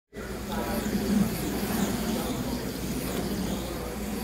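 Voices of a crowd talking, with faint high whines from HO-scale slot cars' small electric motors rising and falling in pitch as the cars lap the track.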